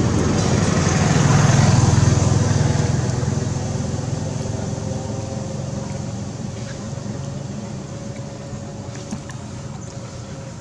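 A motor vehicle's engine running, loudest about two seconds in and then gradually fading away.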